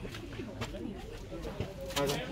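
Indistinct voices of people close by, with a bird calling in the background.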